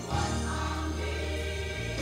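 Gospel choir singing a church song over sustained low instrumental accompaniment, the bass note changing near the end.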